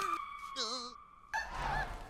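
Cartoon sabre-toothed squirrel vocal effects from the animated film's soundtrack: a held high squeal that fades out about a second in, a short wavering squeak, then a rush of wind as the squirrels fall.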